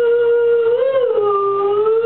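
A male singer's voice holding one long high note, bending up briefly and then dipping lower before settling back on the pitch.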